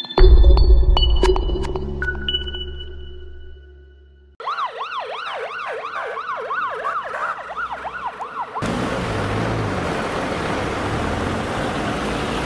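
A logo jingle ends with bell-like chimes over a deep bass hit that fades out over about four seconds. An emergency-vehicle siren then cuts in, wailing rapidly up and down in a yelp pattern for about four seconds, and is followed by a steady, loud rushing street noise.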